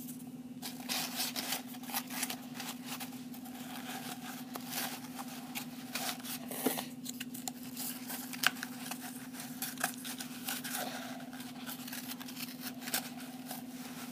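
Pieces of cardboard toilet-paper roll being pushed by hand into a tissue-wrapped cardboard tube: irregular rustling, crinkling and small scraping clicks, over a steady low hum.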